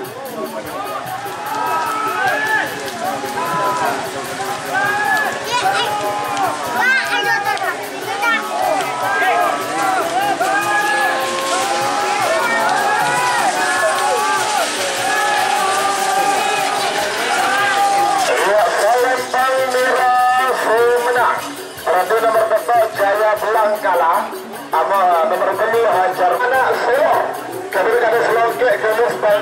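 A crowd of spectators at a bull race shouting and cheering many voices at once, with music playing throughout.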